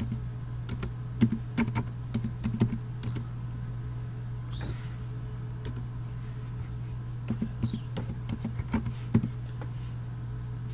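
Computer keyboard typing: a run of keystrokes in the first three seconds, a pause, then another run near the end, over a steady low hum.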